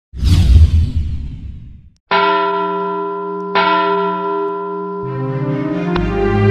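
A loud whooshing swell that dies away over about two seconds, then two ringing bell strikes about a second and a half apart. More musical notes come in near the end as the intro jingle begins.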